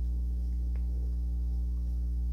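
Steady electrical mains hum, a low buzz with evenly spaced overtones, with one faint tick less than a second in.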